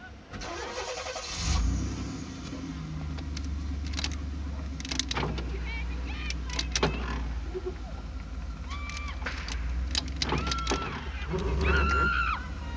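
Car engine cranking and catching about a second and a half in, then idling with a steady low rumble.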